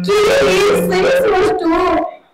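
A high voice singing a drawn-out, wavering line in Bayalata folk-theatre style, with a steady low drone note under it for the first second or so; the line breaks briefly and ends just at the close.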